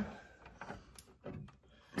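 Quiet handling of a plastic hydroponic garden unit, with one light, sharp click about halfway through.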